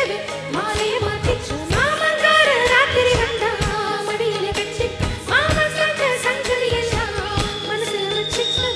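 Indian film song performed live: a female voice sings long, gliding phrases over a steady percussion beat and instrumental backing.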